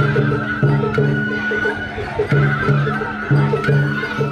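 Festival float hayashi music: a high flute holding long notes that step and bend between pitches, over a repeating, rhythmic lower accompaniment.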